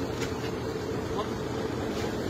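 Tractor engine running steadily, a constant drone with a steady hum.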